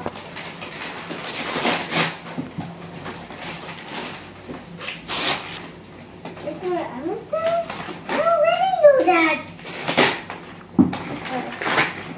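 Wrapping paper rustling and crinkling as it is pulled off a cardboard box, in several short bursts. A child's voice speaks briefly in the middle.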